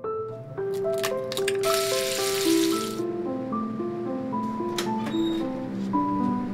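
A keyboard melody of held piano-like notes plays throughout. Bacon sizzles loudly in a frying pan for about a second and a half near the middle, with a few short clicks around it.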